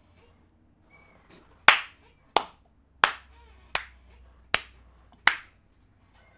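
A person clapping slowly: six sharp claps about two thirds of a second apart.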